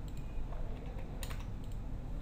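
Computer keyboard keys clicking: a couple of light taps, then a quick run of several key presses a little past the middle, over a low steady hum.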